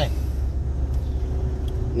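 Steady low rumble of a car's engine and road noise heard from inside the cabin.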